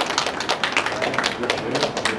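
A small group applauding: many hands clapping in a dense, uneven patter.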